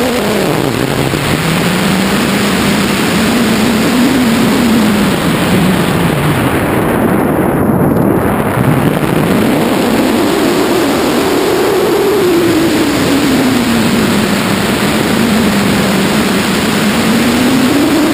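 Loud, steady wind rushing over a hang glider's wing-mounted camera in flight, with a low drone that slowly rises and falls in pitch several times.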